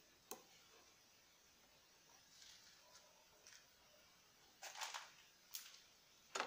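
Mostly near silence, with a sharp click under a second in, a few faint scrapes, and a cluster of louder clicks and scrapes near the end, as a metal part on a washing machine's transmission shaft is turned by hand and winds down until it seats.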